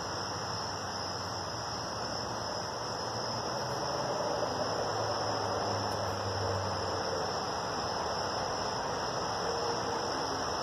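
Steady night chorus of crickets, a continuous high buzz over a low hum and hiss.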